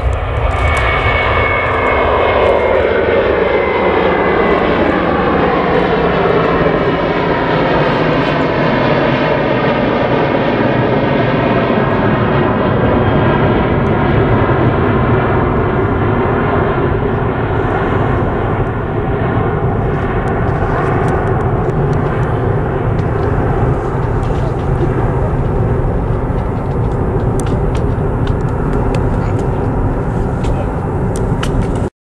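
Airbus A330-200 twin-engine jet airliner at take-off power climbing away: a loud steady jet roar whose tones slide down in pitch over the first ten seconds or so as it passes overhead, then settle into a steady rumble as it recedes.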